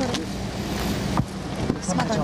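A motor vehicle engine running with a steady low hum under outdoor noise, with a sharp click about a second in.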